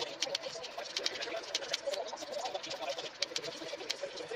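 Scissors snipping through corrugated cardboard, with sharp cuts a few times a second as small pieces are cut off.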